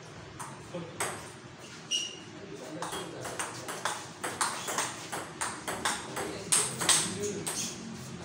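Table tennis ball clicking off bats and the table in a doubles rally: a few scattered hits at first, then a quick run of strokes from about three seconds in.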